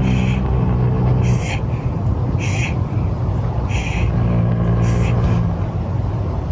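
A person's low, drawn-out groaning in two long spells over a steady background hiss, with a soft high-pitched sound repeating about once a second.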